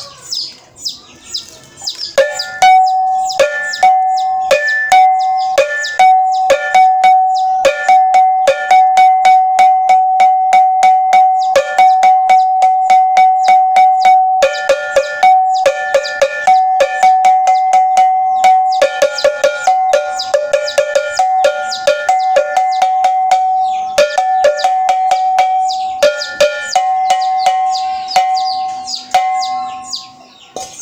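A metal bell struck rapidly and repeatedly, ringing at one clear pitch in runs of fast strokes with short breaks, starting about two seconds in: a ritual bell being sounded.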